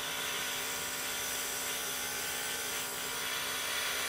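Airbrush spraying dark green food colouring through a paper stencil: a steady hiss of air with the even hum of the airbrush's compressor running underneath.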